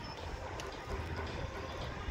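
Distant city traffic heard from high up through an open window: a steady, even low rumble with no distinct events.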